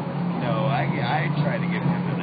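People talking, with a steady low hum underneath.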